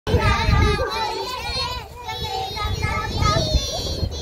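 A group of young children's voices, several talking and calling out over one another at once.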